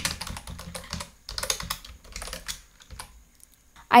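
Typing on a computer keyboard: a run of key clicks for about two and a half seconds, then the typing stops.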